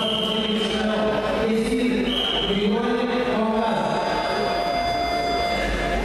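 Voices chanting in unison with long held notes, joined by a steady high tone from about halfway through.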